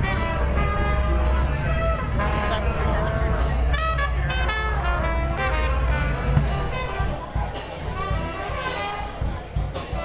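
New Orleans street brass band playing: trumpet and trombone lines over a sousaphone bass line, with bass drum and snare keeping the beat.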